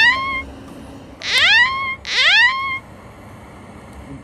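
A rising, pitched whooping tone, heard three times in identical form: the first fades just after the start, and the next two follow back to back about a second in. Each slides up and then levels off.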